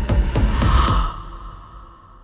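Trailer score and sound design: a fast run of booming percussive hits, about four a second, building to a swell. It cuts off about a second in, leaving a high ringing tone that fades away.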